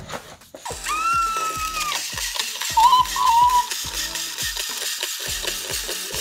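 Background music with a steady beat under a shimmering wash, with a sliding tone about a second in and a short warbling melody line about three seconds in.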